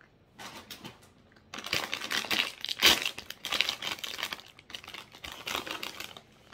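Plastic snack bag of cheese doodles crinkling as it is handled and a hand reaches into it. It starts softly about half a second in and turns into loud, continuous crinkling from about a second and a half on.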